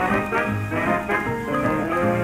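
A 1930s studio dance orchestra playing an instrumental passage, full and continuous. It has the narrow, dull sound of an old broadcast recording.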